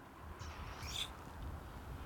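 Steady low rumble of wind on the microphone on an open golf green, with one brief faint high chirp about a second in.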